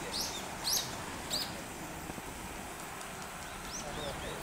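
A small bird chirping: three short, high calls in the first second and a half and one more near the end, over a steady outdoor hiss.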